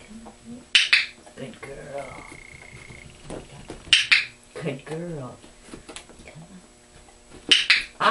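Dog-training clicker clicked three times, about three seconds apart, each a short sharp click that marks the dog's stepping into the box for a treat.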